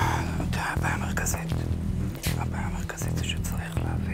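Hushed whispering between people conferring, over background music with a steady, repeating low bass pulse.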